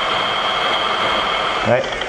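Electric rotary polisher running steadily on its lowest speed setting, around 600 rpm, with a steady high whine, while a wet hand is held on the spinning new wool pad to pull off its loose fibres.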